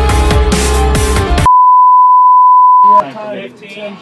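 Electronic music with a beat cuts off abruptly, and a single loud, steady electronic beep holds for about a second and a half, like a broadcast test tone. It stops suddenly as voices begin.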